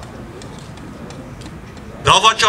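A pause in amplified speech: steady outdoor background noise with a few faint ticks.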